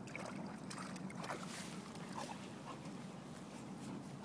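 A golden retriever digging at a shallow muddy puddle, with wet splashing and sloshing of mud and water, in irregular short bursts.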